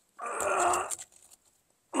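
A man's short, strained groan, lasting under a second, as he stretches into the firebox to set a brick.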